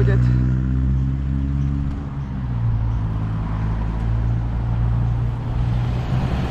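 A four-wheel drive's engine idling close by while the vehicle waits at a junction, a steady low hum whose tone shifts slightly about two seconds in.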